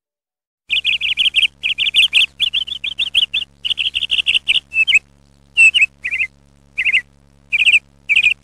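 Bird chirping in quick runs of short, repeated notes with brief pauses between runs, over a steady low hum; it starts abruptly out of silence just under a second in.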